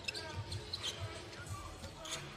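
A basketball being dribbled on an indoor arena court, giving faint repeated thumps. Arena music and crowd murmur sit quietly behind.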